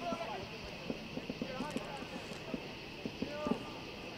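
Field sound of a soccer match: players' faint shouts and calls, with scattered short knocks from kicks of the ball and feet running on the turf.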